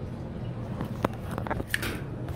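Handling noise from a phone being held with a finger over it: fingers rubbing against the phone and a few short light clicks, over a low steady hum.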